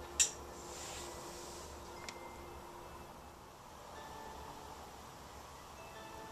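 Quiet handling of a soft clay handle strip against a clay cup: a sharp click shortly after the start, a brief soft rubbing, and a fainter click about two seconds in, over a faint steady hum.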